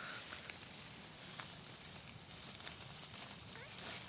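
Soft rustling of grass and dry leaf litter with scattered light crackles, from footsteps and a hand moving through the grass.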